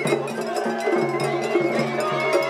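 Japanese festival hayashi ensemble playing: drums beating a rapid, even rhythm, a small metal hand gong (atarigane) clanging along, and a bamboo flute holding a high note.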